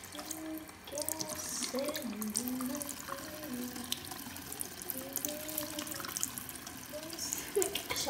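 Bathroom sink tap running into the basin while a natural sea sponge is squeezed and rinsed under the stream, with small wet splashes.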